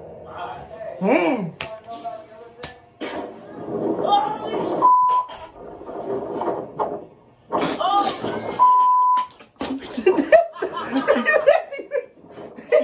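Voices shouting and talking from a TV playing a video of riders on an amusement ride. The voices are cut twice by a short, steady high beep like a censor bleep, once about five seconds in and again near nine seconds.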